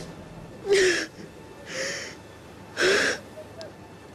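A young woman sobbing: three gasping, breathy sobs about a second apart, the first and last with a short falling cry in the voice.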